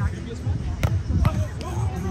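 Two sharp hits of a volleyball being struck, a little under half a second apart, with voices around.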